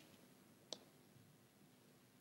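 Near silence: room tone, broken by one short, faint click about three-quarters of a second in.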